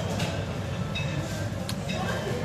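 Street traffic: a steady low rumble of car and motorcycle engines as vehicles pass close by, with a couple of faint brief ticks.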